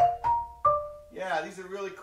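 Marimba struck with Mike Balter Titanium Series 323R mallets: three ringing notes in the first second, each higher than the last, closing a fast rising run. A man's voice follows.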